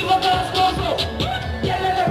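Live singing into a microphone over loud backing music with a steady drum beat, played through a PA system.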